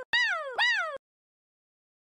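A cartoon animal-call sound effect, two high-pitched calls in quick succession, each rising and then sliding down in pitch. It stops suddenly about a second in.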